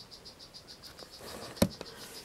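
Poison dart frog calling: a high, rapid pulsed trill of about ten pulses a second that runs through most of the moment. A single sharp click comes about one and a half seconds in.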